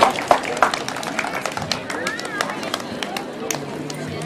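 Scattered hand claps from an outdoor crowd, thinning out and dying away, with voices talking underneath.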